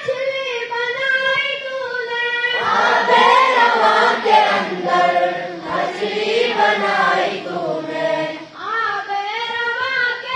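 A group of boys chanting a morning prayer in unison. A single voice leads at first, the whole group joins in about two and a half seconds in, and a lone voice takes over again near the end.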